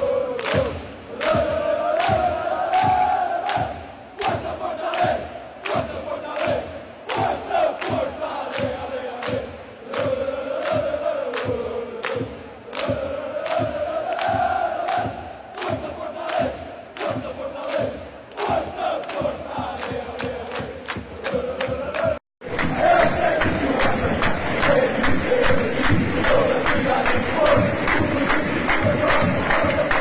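Stadium crowd of football supporters singing a chant in unison, with a steady beat about twice a second. The sound drops out briefly about two-thirds of the way through and comes back as a denser, louder mass of crowd singing.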